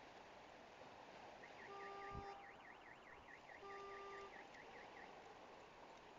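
A faint electronic warbling alarm tone, rising and falling about eight times a second for roughly four seconds, with two short steady horn-like tones and a low thump about two seconds in. Under it runs a steady rush of flowing water.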